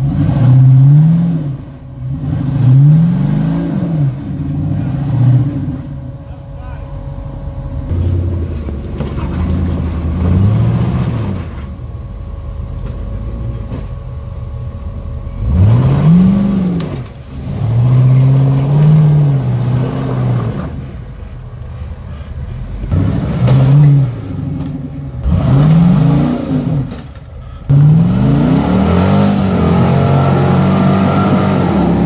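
Engine of a lifted Jeep Wrangler rock crawling, revved in repeated bursts of throttle that rise and fall in pitch as it works up a steep rock ledge.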